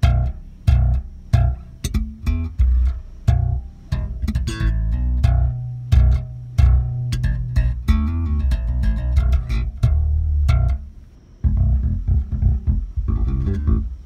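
MTD electric bass played slap style through a Jeep's car audio system, with sharp percussive attacks over deep low notes. The bass is strung with Ernie Ball Cobalt strings. The playing pauses briefly about eleven seconds in.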